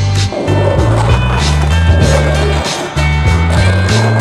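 Rock soundtrack with a bass line, over the rolling rumble of skateboard wheels on asphalt.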